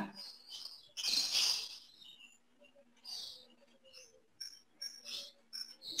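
Short, high bird chirps at irregular intervals, over a faint steady hum.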